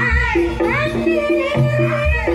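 Javanese gamelan ensemble playing a steady pattern of repeated notes, with a female sinden singing a gliding vocal line over it. A deep low note sounds just after the start and again at the end.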